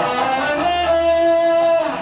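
Stratocaster-style electric guitar playing a short single-note phrase: a few quick notes, then one note held for about a second. It is a phrasing exercise of three notes by step followed by a leap of a third.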